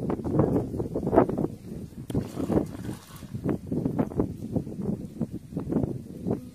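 Hands digging and scooping in wet mud and muddy water, a quick irregular run of squelches and small splashes.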